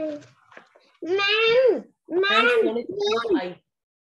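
A child's voice over a video-call connection, speaking in three short high-pitched bursts with rising and falling pitch.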